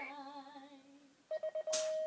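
Female voice singing the national anthem, holding a wavering note that fades out a little past a second in. About a second and a half in, a quick run of short beeps leads into a steady high tone. Two short, loud rushes of noise follow near the end.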